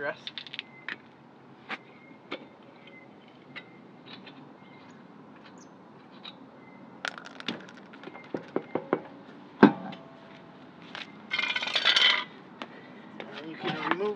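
Steel lug nuts being taken off a wheel's studs and set down on asphalt, giving scattered light metal clinks and clicks. A louder metal knock comes about ten seconds in, and a rasping scrape lasting about a second follows near the end.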